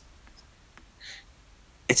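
A pause in a man's talk holding one short airy breath sound about a second in, over faint room tone; his speech resumes right at the end.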